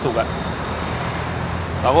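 Steady low rumble of street traffic, with a man's voice speaking briefly at the start and again near the end.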